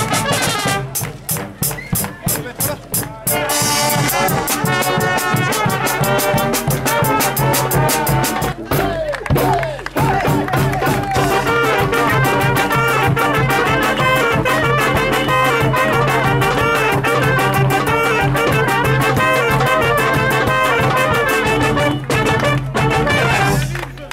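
Street brass band playing: snare drum, trumpets, saxophones and trombones. It opens on a drum-driven passage with short, choppy phrases, the full brass comes in about four seconds in, and after a brief break near the middle the band plays on steadily.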